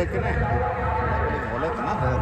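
Voices talking in the background over a steady hum of several held tones.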